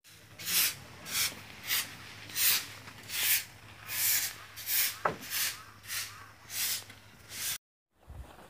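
A short bundled-straw hand broom sweeping bare, dusty ground in about a dozen brisk strokes, roughly one and a half a second, each a short scratchy swish. The sweeping cuts off abruptly near the end.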